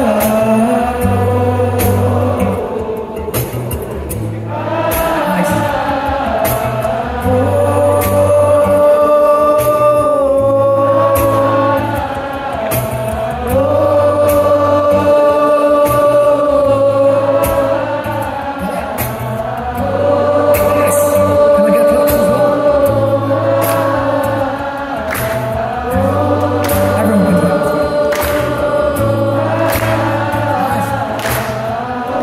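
Audience singing along together in long held notes, phrase after phrase, over a steadily played acoustic guitar.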